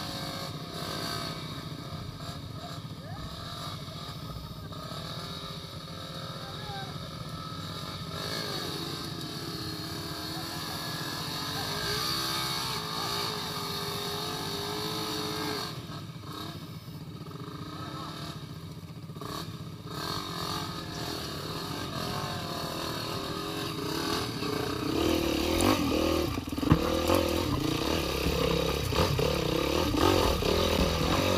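Dirt bike engine running steadily at a low idle, with muffled voices over it. It gets louder and rougher in the last few seconds as the engine is revved.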